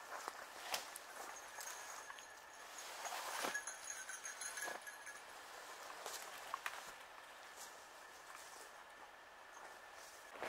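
Faint footsteps, rustling and a few light knocks in forest undergrowth, as a hung food-cache bucket is worked down from a tree.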